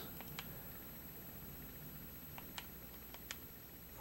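A few faint, sharp clicks of remote control buttons being pressed, about five in all and spread unevenly, over quiet room tone.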